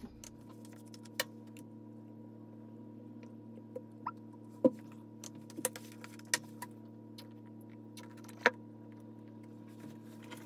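Scattered light clicks and taps of plastic paint bottles and a plastic measuring cup being handled on a padded table while white acrylic paint is poured. A steady low hum runs underneath.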